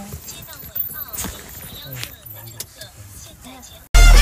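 Indistinct voices talking in the background, with a few sharp clicks and rattles of handling. Near the end it cuts off suddenly into loud music.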